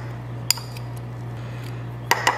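A metal spoon clinking once against a glass jar about half a second in, with a few fainter ticks of the spoon scraping peanut butter, over a steady low hum.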